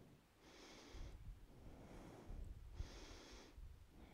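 Faint breathing of a woman holding a yoga balance pose: two breaths about two seconds apart, over a low rumble.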